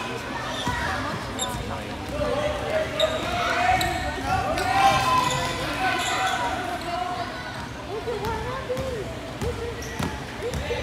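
A basketball bouncing on a hardwood gym floor during a children's game, mixed with children's shouts and chatter that are loudest about halfway through, all echoing in a large gymnasium.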